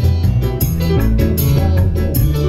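Live band music: a strong bass line and guitar over a steady drum beat, with no vocals in this stretch.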